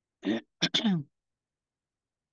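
A person clearing their throat in two short bursts, a rasp and then a longer voiced one that falls in pitch, all within the first second.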